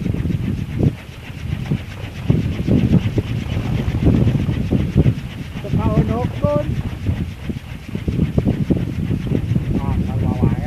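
Kolecer, a Sundanese bamboo wind propeller on a tall pole, whirring in the wind: a low rumbling drone that rises and falls with the gusts, with wind buffeting the microphone.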